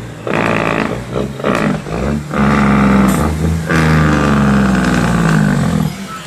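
Leyland truck's Cummins L10 diesel engine, heard from inside the cab, pulling and revving up through the gears of its Spicer 10-speed gearbox, the engine note dipping briefly at each shift and climbing again.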